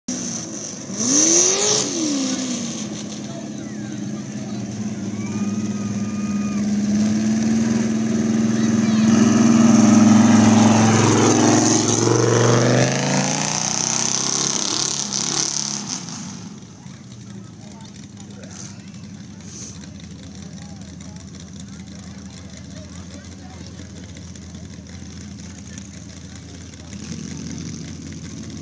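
A mud-bog vehicle's engine running hard at high revs, with a quick rev about a second in. It builds to its loudest about ten seconds in, then falls away suddenly about sixteen seconds in to a lower, steady engine hum.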